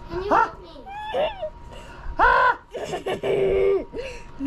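Children's voices calling out and squealing with no clear words: several short high-pitched cries, the loudest a held call about two seconds in and another lasting nearly a second shortly after.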